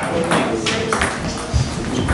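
Table tennis rally: a celluloid ball being struck by rubber-faced paddles and bouncing on the table, a quick series of sharp clicks.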